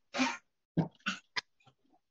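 Several short noises close to the microphone from a man moving at his desk. The loudest comes just after the start, and a brief sharp click follows about a second and a half in.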